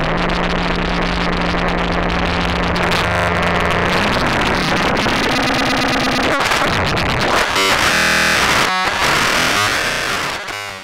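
Gorga Eurorack Benjolin synthesizer module playing harsh, noisy chaotic electronic sound while its knobs are turned by hand. A steady low drone holds for the first four seconds, then gives way to choppy, stepping patterns.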